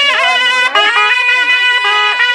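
Panche baja wedding band: sahanai, Nepali shawms with brass bells, playing a loud, held melody, the pitch bending at the start and then holding steady.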